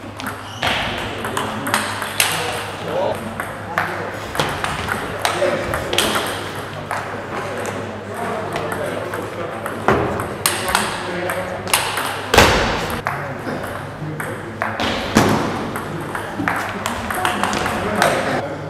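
Table tennis ball clicking back and forth off the rackets and bouncing on the table during rallies, with a loud burst about twelve seconds in.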